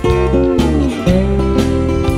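Instrumental break in a country song: strummed acoustic guitar over a steady bass, with a guitar line sliding down in pitch about half a second in.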